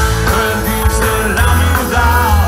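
Live rock band playing loud on stage: electric guitars, bass and drums with the lead singer's voice over them, heavy in the bass.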